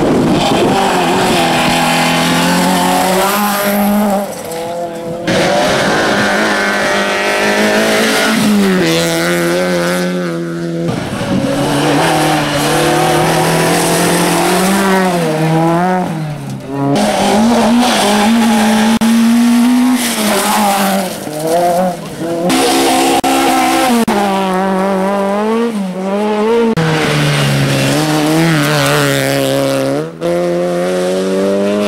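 Several rally cars on a loose gravel stage, one after another, engines revving hard with pitch that climbs and drops sharply at each gear change and lift-off as they slide through the corners.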